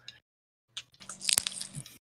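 A short crackly, crunching rustle that starts about three-quarters of a second in, with one sharp click in the middle of it, over a faint low hum.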